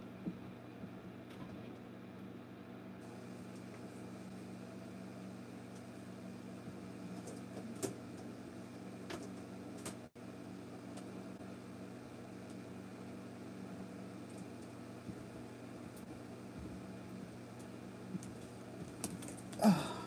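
Room tone of an empty room: a steady low hum, with a few faint knocks and clicks from movement off-mic, especially near the end. A voice says "Oh" at the very end.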